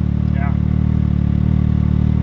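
Can-Am Maverick X3 turbo side-by-side's three-cylinder engine idling steadily at a standstill.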